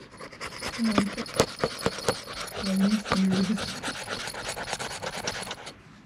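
Scratch-off lottery ticket being scraped: quick, irregular rasping strokes across the coated play area, with a few brief low hums in between.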